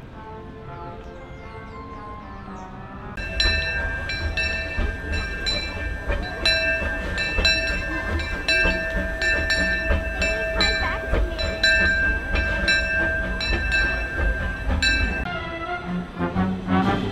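Steam locomotive bell ringing over a low rumble, struck about twice a second and its tones ringing on between strokes. It starts about three seconds in and stops shortly before the end.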